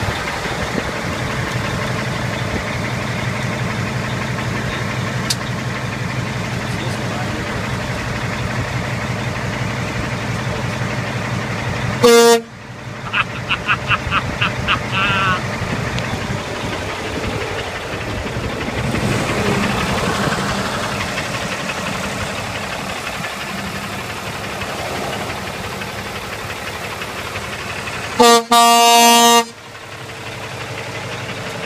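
Kenworth utility truck's diesel engine idling steadily with a low throb. The truck horn gives one short, loud blast about twelve seconds in and a longer blast of just over a second near the end.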